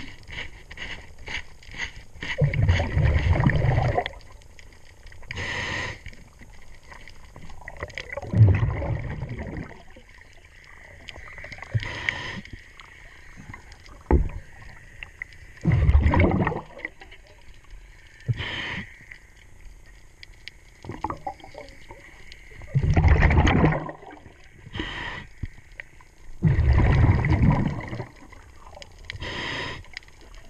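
Diver breathing underwater through a regulator: a short hiss on each inhale and a rumbling rush of exhaust bubbles on each exhale, five exhales spaced every five to seven seconds. Scattered sharp clicks fall in between.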